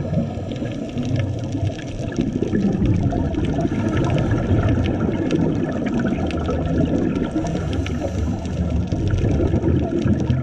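Underwater ambience over a coral reef: a steady, fluctuating low rumble of water moving against the camera, with a scattered fine crackle throughout.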